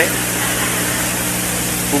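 Steady hiss with a low, even hum underneath.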